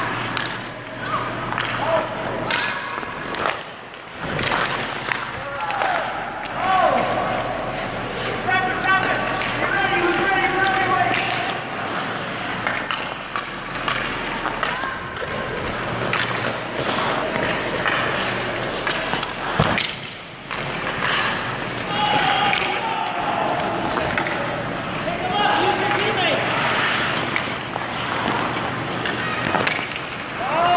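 Youth ice hockey on an indoor rink: skate blades scraping the ice and sharp knocks of sticks and puck, with indistinct children's and adults' voices calling out, over a steady low hum.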